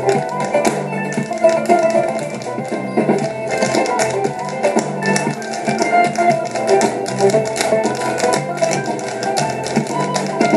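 Lively Irish dance music with a rapid stream of sharp clicks from a group of Irish step dancers' shoes striking the stage floor in time with it.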